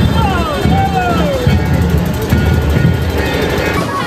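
Loud festival procession sound: heavy low drum beats with voices calling and chanting over them in long falling lines. The sound changes abruptly near the end.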